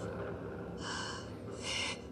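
A woman crying, drawing two short sobbing breaths: one about a second in and one near the end.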